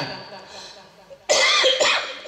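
A man coughs into his fist at a microphone: a sudden loud cough just over a second in, in two quick bursts.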